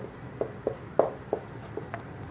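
Marker writing on a whiteboard: a run of about five short, quick pen strokes and taps as letters are written.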